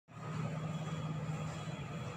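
A steady, low background rumble.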